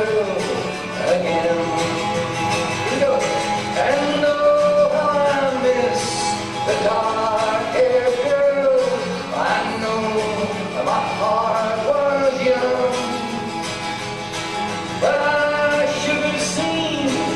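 A man singing a slow folk song in long held phrases, accompanying himself on acoustic guitar.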